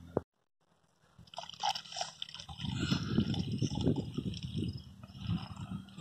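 Water pouring from a plastic bucket into a knapsack sprayer tank through its filter strainer, starting about a second in and running steadily as the tank fills.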